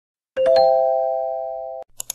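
Electronic chime sound effect: three quick rising notes that ring on together and fade for over a second before cutting off abruptly. A quick double click, like a mouse click, comes right at the end.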